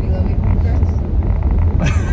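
Steady low rumble of road noise inside a car's cabin, with people talking quietly and a burst of voice or laughter near the end.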